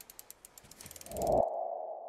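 Animated logo sting: a rapid run of ticks under a swell that builds for about a second and a half and stops sharply, then settles into a single held tone.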